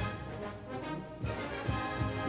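Instrumental background music with held notes.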